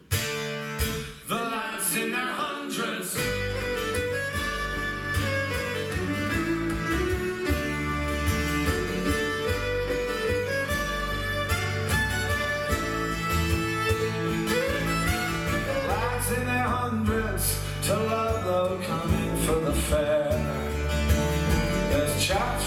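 Live acoustic folk trio playing an instrumental introduction: a fiddle leading the tune over a strummed large mandolin-family instrument, with a double bass coming in about three seconds in.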